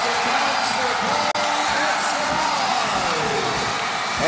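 Large arena crowd of basketball fans cheering and shouting, many voices together, loud and steady.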